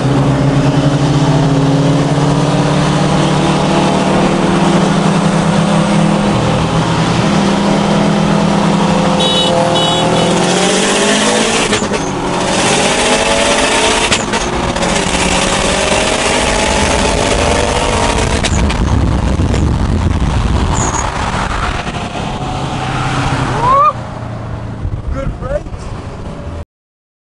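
Car engines heard from inside one of two racing cars, a Mitsubishi Lancer Evolution X among them. They cruise steadily for the first ten seconds or so, then accelerate hard, the revs climbing in several rising sweeps through the gears. For the last several seconds wind and road noise take over.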